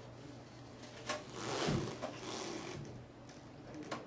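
Faint handling noise as fingers work a thin wire into a DVR's spring-clip RS-485 terminal block: a click about a second in, a rustling scrape for about a second after it, and another click near the end, over a low steady hum.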